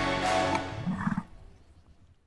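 Closing music stops about half a second in, and a short, low grunt from a bison follows about a second in before the sound dies away.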